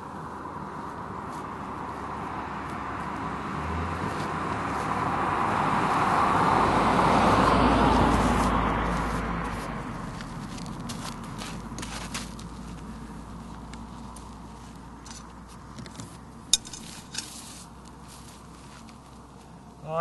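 A vehicle passing by: a rushing noise that swells to a peak about seven seconds in and then fades. It is followed by a scatter of small clicks and taps from a brush and paper being handled.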